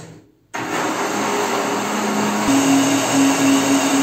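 Countertop blender switched on about half a second in, its motor running steadily as it blends leaves in water. About halfway through, the motor's pitch steps up.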